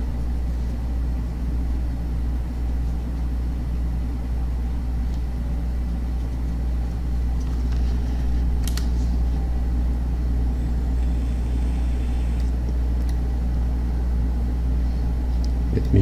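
Steady low background hum with no change in pitch or level, and a single sharp click about halfway through.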